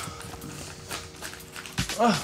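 An apartment door being opened and a person stepping in: a few light clicks and footsteps, then a dull thump near the end, over quiet background music.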